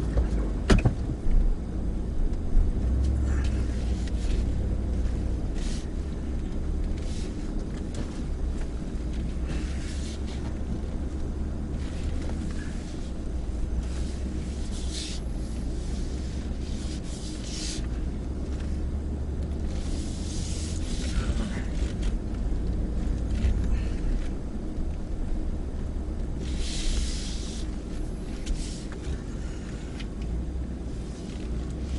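2018 Ford F-150 heard from inside the cab, crawling slowly along a rough wooded trail: a steady low engine and drivetrain rumble, with a sharp click about a second in and brief hissing or scraping noises now and then.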